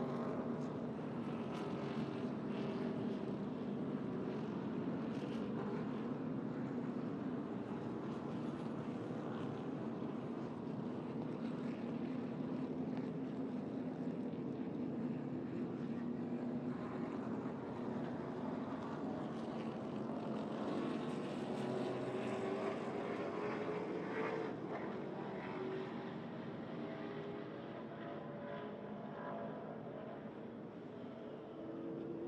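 V8 engines of NASCAR Cup Series stock cars running at a steady, moderate pace, giving a continuous drone whose pitch drifts slowly up and down with no hard revving. This fits the field circling under the caution that follows the end of a stage.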